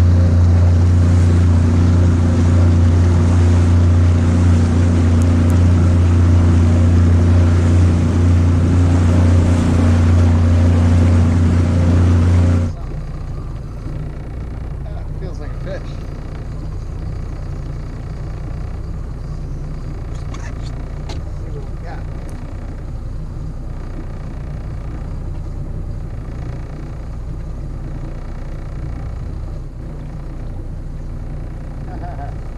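An Evinrude E-TEC 90 hp outboard motor running steadily under way, then cutting off suddenly about 13 seconds in to a much quieter low hum of the motor at trolling speed.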